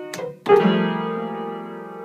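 Upright piano with a cluster of keys struck together by a toddler's hand about half a second in, loud at first and ringing on as it slowly fades.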